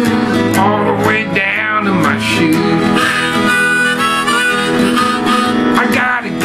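Harmonica in a neck rack played over a strummed acoustic guitar in a blues, the harmonica bending its notes up and down.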